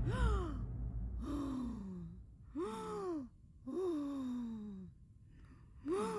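A woman's voice making about five short wordless sounds, each rising briefly and then falling in pitch, with short quiet gaps between them.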